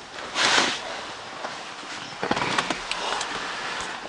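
Rustling, scuffing and small knocks of a person climbing into a car's seat, with a louder rustle about half a second in and a run of scuffs and clicks in the second half.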